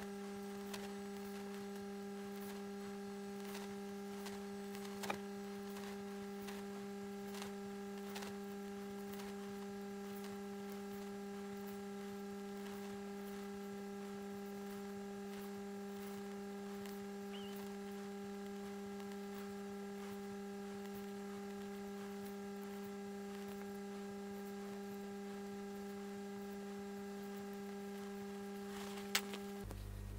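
A low, steady electrical hum that cuts off just before the end, with a couple of faint clicks, one about five seconds in and one near the end.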